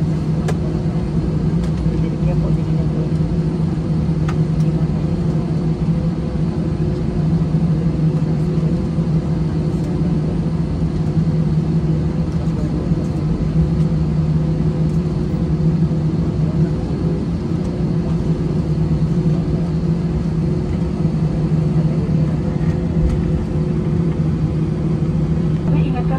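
Airbus A320 cabin noise while taxiing, heard from a window seat over the wing: the jet engines at low taxi power and the cabin air system make a steady drone with a constant low hum.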